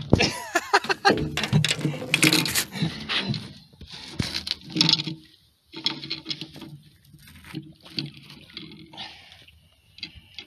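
A hooked largemouth bass splashing and thrashing at the water's surface as it is landed by hand, with sharp clicks and knocks from handling it and the rod. The splashing is busiest in the first half and thins to scattered knocks later.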